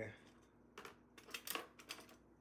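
Kitchen utensils clinking and rattling in a drawer organizer as a hand rummages through them: a quick cluster of light clicks in the second half.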